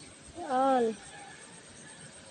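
A cat meowing once, a short rising-then-falling call about half a second in.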